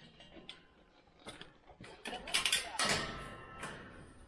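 Metal wire-panel pen gate rattling and clanking as it is handled and swung open: a few light clicks, then about two seconds in a loud jangling rattle lasting a second and a half.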